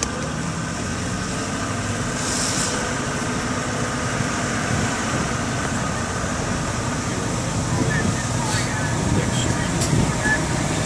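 Ambulance engine and road noise heard from the cab as it drives, a steady low rumble, with a short hiss about two and a half seconds in.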